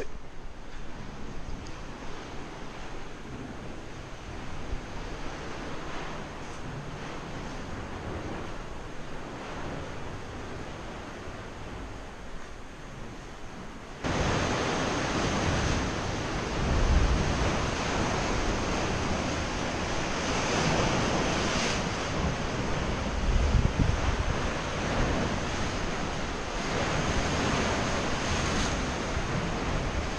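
Sea surf washing against the rocks of a sea cave: a steady rushing wash that jumps louder about halfway through, with a couple of heavier surges of breaking waves.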